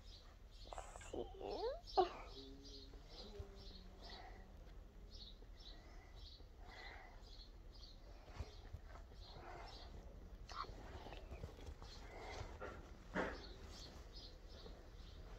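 Faint sounds of soft slime being stretched and squeezed in the hands, with a short spoken word about two seconds in. A faint, even high chirping repeats about three times a second behind it.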